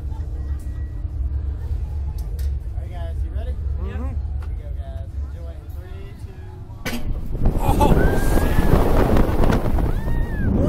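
Steady low hum with faint voices while the reverse-bungee capsule waits, then a sharp clunk about seven seconds in as it is released. Right after, a much louder rush of wind over the camera with the riders screaming as the capsule is flung upward.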